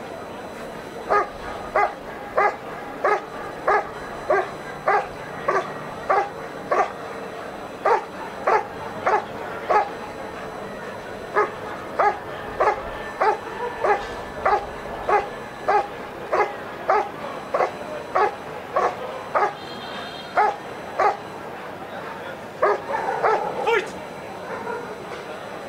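German Shepherd barking steadily at the helper in the guard-and-bark phase of a protection routine, about two sharp barks a second, with a short pause about ten seconds in.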